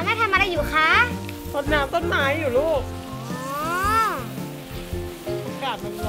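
Garden hose spraying water onto a hedge with a steady hiss, under background music and swooping, whistle-like sound effects, the longest a slow rise and fall about four seconds in.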